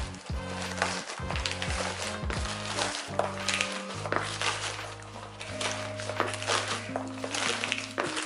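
Background music with steady sustained low notes, over the crinkling and rustling of a plastic bubble-padded USPS Priority Mail flat rate envelope as a box is pushed into it in a tight fit.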